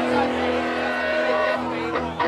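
Amplified stage rig sounding steady held tones over a low hum, a sustained drone from the band's instruments and amps between songs.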